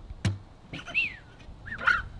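A single sharp knock, then a bird calling twice: a short whistle that rises and falls in pitch, and near the end a louder wavering call.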